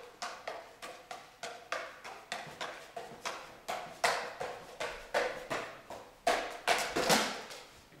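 Five juggling clubs being thrown and caught in a steady run, each catch a short smack of the club handle into the hand, about three to four a second. The catches grow louder over the last two seconds.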